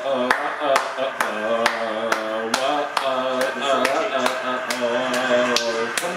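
Music with a steady clapping beat, about two beats a second, under a held, stepping melody.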